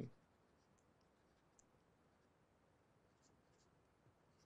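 Near silence with a few faint, scattered ticks of a stylus on a tablet as words are handwritten.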